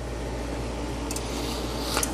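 OWON XDS2102A oscilloscope's relays clicking faintly about a second in as its auto set switches ranges, over a steady low hum and hiss.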